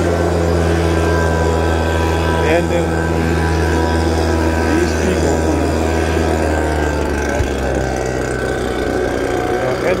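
Vehicle engine idling with a steady low hum, its tone shifting slightly about seven and a half seconds in.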